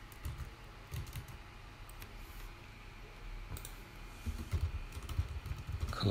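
Typing on a computer keyboard: scattered key clicks at first, then a quicker run of keystrokes in the last two seconds while HTML attributes are typed into a code editor.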